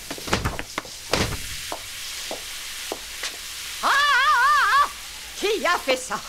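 Water gushing in a hissing spray from a broken wall pipe, with two dull thumps in the first second or so. About four seconds in, a brief wavering warble sounds over the spray.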